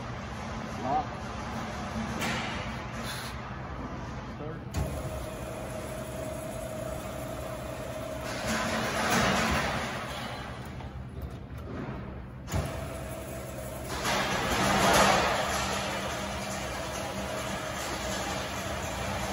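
FMB Titan band saw running, with a steady motor hum throughout. A sharp click comes about five seconds in and again past the middle, and two louder rushing swells build and fade, one around the middle and one near the end.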